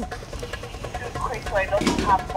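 A faint voice talking, quieter than the talk around it, with short phrases about a second in and near the end.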